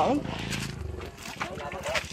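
Men's voices talking and calling out, loudest just at the start.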